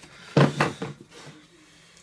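Handling noise from a small plastic saliva-collection tube: a short cluster of knocks and clatter about half a second in, then a few faint ticks.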